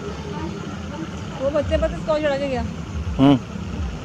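A person's voice, with wavering voiced sounds in the middle and a short loud 'hmm' near the end, over a steady low rumble.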